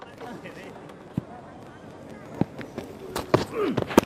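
Open-air sound from a cricket ground during a live broadcast: scattered sharp knocks or claps, the loudest near the end, with short calls from the players.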